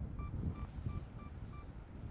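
A camera giving six short, identical electronic beeps at an even pace of about three a second, stopping shortly before the end, over a low rumble of wind on the microphone.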